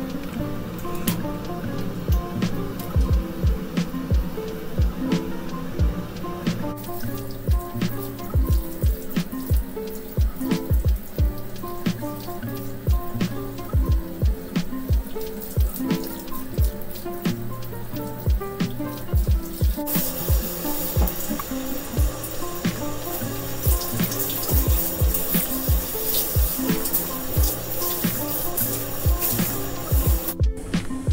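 Background music with a steady beat. From about two-thirds of the way through, the hiss of a handheld shower spray runs under it.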